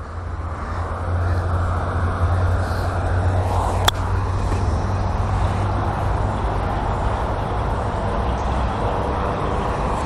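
Steady low rumble and hiss of outdoor background noise, with one sharp click about four seconds in.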